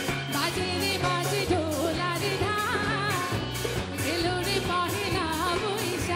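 A woman singing a pop song live with a band of drums, bass and electric guitar, over a steady beat.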